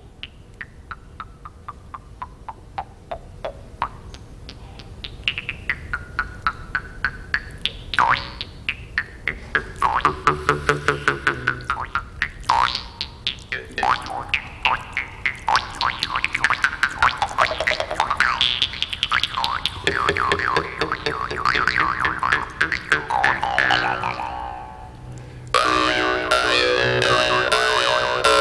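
Jew's harps being plucked rapidly, their twang swept up and down in pitch as the player's mouth changes shape. One harp plays quietly at first and a second joins, growing louder; after a short dip near the end the two play a louder, denser passage.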